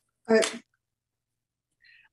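A woman's voice gives one short, laughing 'I' about a third of a second in, and the rest is silent.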